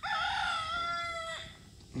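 A rooster crowing: one long held note that cuts off about a second and a half in.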